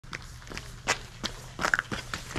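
Footsteps of two people walking toward the microphone on wet asphalt, as a quick series of steps about three a second.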